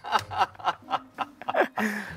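A man laughing: a quick run of short chuckles, about four or five a second.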